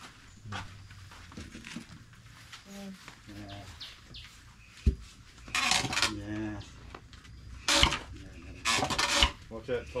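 Wooden foot-operated pounder (a treadle mortar and pestle) being worked by foot to mash ingredients for elephant vitamin balls. It gives three sharp knocks, the first about five seconds in and the next two about three and a second and a half apart.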